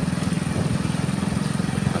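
Motorcycle engine running steadily under way, a continuous low pulsing drone.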